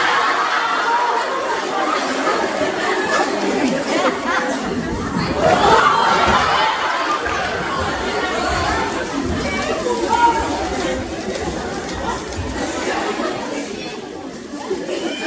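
Several people talking at once, their voices overlapping into a continuous chatter.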